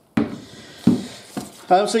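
Glass beer bottles handled inside a Coleman roll-up soft cooler: the foil insulated lining rustles, with a sharp knock a little under a second in and a smaller click after it.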